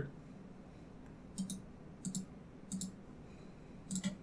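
Computer mouse clicking: four faint clicks spread over the last three seconds, each a quick double tick.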